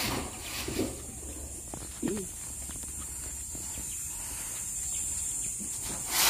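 Quiet outdoor background with a steady high-pitched hiss and low rumble, a few faint clicks, and a brief bit of voice about two seconds in.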